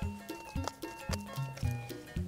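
Background music: a light, bouncy tune with regular low bass notes about twice a second.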